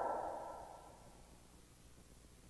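The echo of a man's preaching voice dying away over about a second, then near silence.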